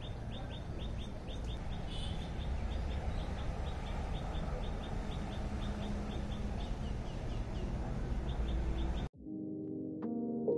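A small bird repeats short, high, falling chirps, about three or four a second, over a steady low outdoor rumble. About nine seconds in, this cuts off suddenly and soft keyboard music begins.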